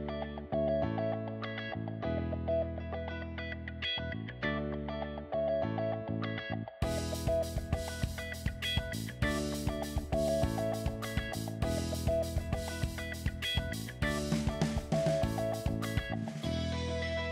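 Background instrumental music that grows fuller about seven seconds in, with a steady beat added.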